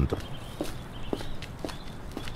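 Footsteps walking at an even pace, about two steps a second: a footstep sound effect in an audio drama.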